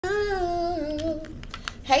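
A woman humming a short, wavering phrase for just over a second, then a few light clicks.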